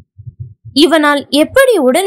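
A woman's voice reading a Tamil novel aloud. She picks up again about three-quarters of a second in, after a short pause that holds only a few faint low thuds.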